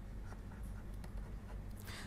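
Faint scratching of a stylus writing on a pen tablet, over a steady low hum.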